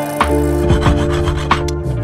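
Hand saw rasping in short strokes as it trims a copper pin flush with an oak mitre joint, mostly in the first half. Background music with a steady beat plays throughout.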